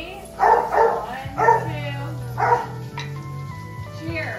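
A dog barking about four times in short, sharp bursts over background music.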